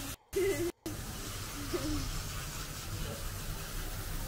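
Steady background hiss and low hum of a vehicle service bay, with a brief snatch of a voice in the first second, set between two short dropouts to silence.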